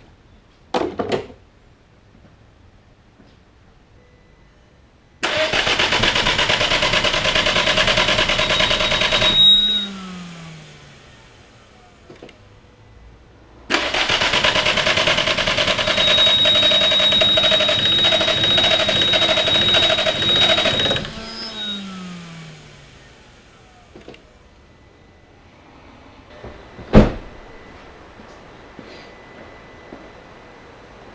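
The 2002 VW Jetta 1.8T's starter cranking the engine in two attempts, about four seconds and then about seven seconds long, each winding down without the engine catching and running. A high steady whistle sounds over the cranking, which the on-screen caption calls bad. A sharp knock near the end.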